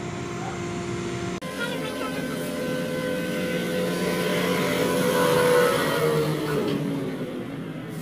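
A truck passing on the road: engine and road noise swell to their loudest a little past the middle and then fade away, the engine note dropping slightly as it goes by.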